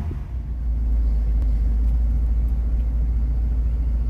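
Steady low rumble of a car driving, heard from inside the cabin: road and engine noise, swelling in the first second and then holding steady.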